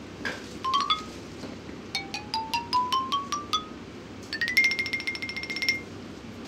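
Background music of short struck notes: a few quick notes, then a run climbing upward note by note, then one high note repeated rapidly for over a second.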